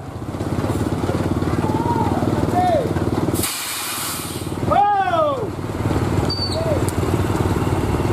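Hino box truck's diesel engine running with a fast, even low pulse as it pulls slowly round a steep hairpin climb. About three and a half seconds in, a short burst of hissing air is heard.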